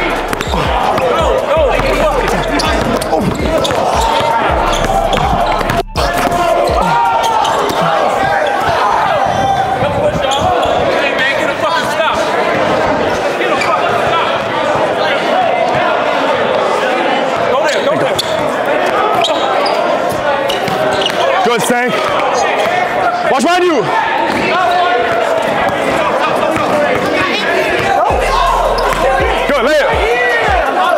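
A basketball bouncing on a hardwood gym floor during a game, with players and spectators shouting and talking over one another in an echoing gym. There is a brief dropout about six seconds in.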